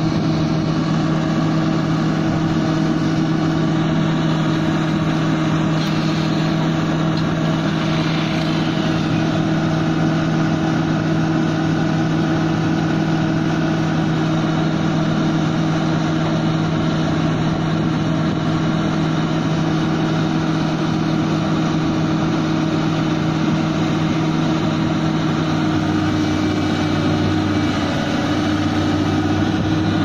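Komatsu PC350 LC excavator's diesel engine running steadily at a constant pitch as the machine tracks down off a low-bed trailer. About four seconds before the end a deeper tone joins in.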